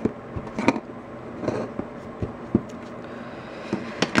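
Scattered light taps and clicks from a plastic ink pad and a rubber stamp being handled and set down on a craft mat, a few knocks sharper than the rest.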